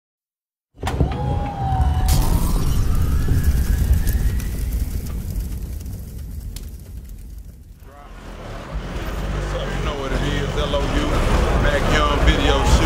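Channel intro sting with a deep bass rumble and a rising sweep, starting suddenly after a moment of silence and fading out after about seven seconds; then outdoor street noise with people talking from about eight seconds in.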